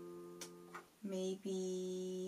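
Casio electronic keyboard playing piano-voiced chords: a held chord fades away, then about a second in a new chord is struck, briefly released, and struck again and held.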